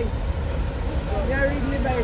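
Steady low rumble of street traffic, with a double-decker bus's engine close by, under a person talking.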